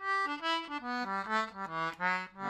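Accordion playing an Irish traditional tune: a single line of quick notes that runs downward near the end.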